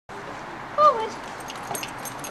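A woman's voice calls the guide-dog command "Forward!" once, short and falling in pitch, to a Labrador guide dog in harness on stone steps.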